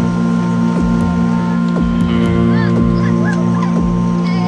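Music: a sustained drone chord with a regular beat of low, falling-pitch drum hits about two a second. Short warbling high glides come in during the second half.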